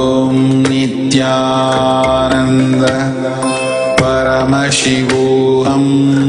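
Devotional mantra chanting set to music: long held sung notes that move between pitches over a steady low drone, with occasional sharp percussive strikes.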